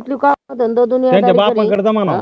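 Speech only: one person talking, with a brief pause about half a second in.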